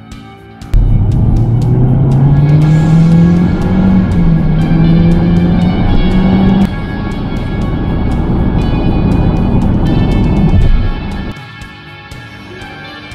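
Toyota Corolla Touring Active Ride's 2.0-litre four-cylinder engine heard from the cabin, pulling hard under acceleration. Its note climbs, dips briefly about four seconds in and climbs again, then eases off and fades near the end. Background music plays throughout.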